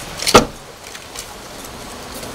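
A car door shutting: one loud, sharp thud about a third of a second in, with a lighter click just before it.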